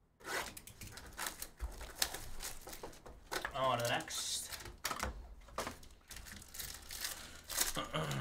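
A cardboard trading-card hobby box is pulled open and a foil card pack is handled and torn open, making a run of sharp rustles, crinkles and tearing snaps. A short voice sound comes about three and a half seconds in.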